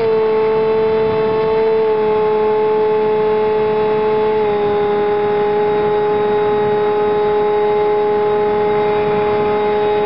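Brushless outrunner electric motor and propeller of a Multiplex Easy Star RC plane, heard close from the onboard camera, running at a steady high speed with an even whine. Its pitch steps down slightly about four and a half seconds in, with a rush of air beneath it.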